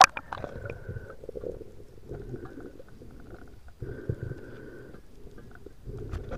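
A sharp splash as an action camera plunges under the sea surface, then muffled underwater rumbling and swishing of water in stretches of about a second, with short lulls between them.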